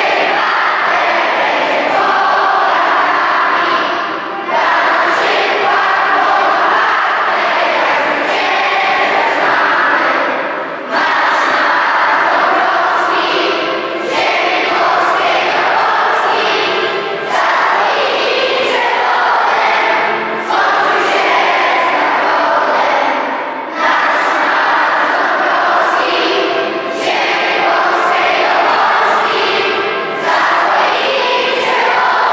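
A large group of children and adults singing together, the sung lines broken by short breaks every few seconds.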